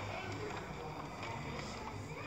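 Cartoon soundtrack playing from a television speaker, mostly a steady background music bed with no clear words.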